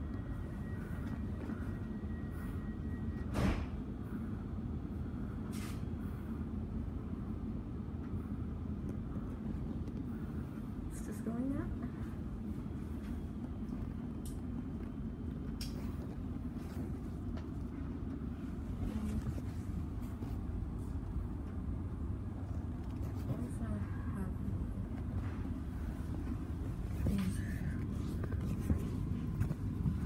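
Steady low rumble inside a suburban electric train carriage, with a single sharp knock about three and a half seconds in.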